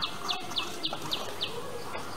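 A bird calling a quick run of short chirps, each dropping in pitch, between three and four a second, stopping about a second and a half in. There are a couple of light clicks as a ruler and sketchbook are handled.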